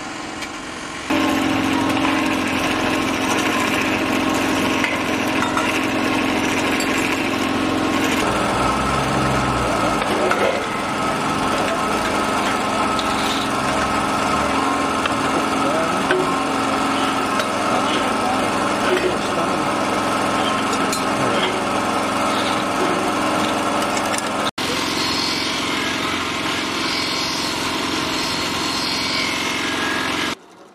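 Small electric motor of a tinsmith's equipment running steadily with a whine. The sound changes abruptly about a second in and again about eight seconds in, and drops out for a moment about three quarters of the way through.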